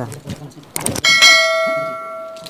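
A short click, then about a second in a single bright bell-like notification ding that rings on and slowly fades. It is the sound effect of an animated subscribe-button-and-bell overlay.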